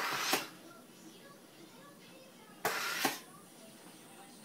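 SodaStream soda maker carbonating a bottle of water: two short presses of the button, each a hiss of CO2 gas injected into the water lasting about half a second, about two and a half seconds apart.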